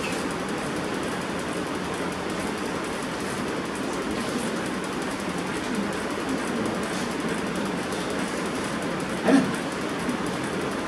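Steady, even background noise of a lecture room with no one speaking, and one short sound about nine seconds in.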